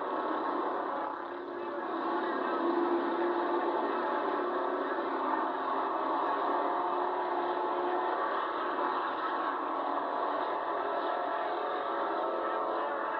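Several pure stock race cars' engines running together at racing speed on a dirt oval, a steady drone with a brief dip about a second in.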